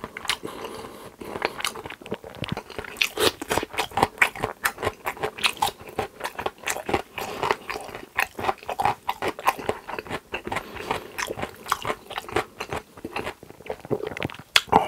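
Close-miked chewing of food in the mouth: a dense, irregular run of sharp mouth clicks and smacks, several a second.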